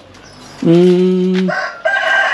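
A rooster crowing, with one long level note lasting about a second, mixed with a man's drawn-out 'uhh'.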